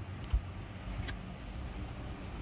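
Low steady background hum, with a soft thump about a third of a second in and a faint click about a second in.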